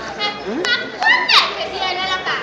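High-pitched wordless voices calling and squealing, several short cries with swooping pitch, the loudest a little past a second in.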